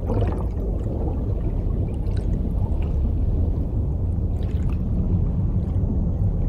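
Steady low rumble of water, an underwater ocean ambience from a film soundtrack, with faint gurgling on top.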